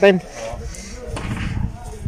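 A man's short exclaimed 'oh', then faint background voices over a low, uneven rumble. There is no steady hum of a running motor.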